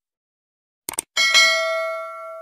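Subscribe-animation sound effects: a quick double mouse click just before a second in, then a bright notification-bell ding, struck twice in quick succession, that rings on and fades.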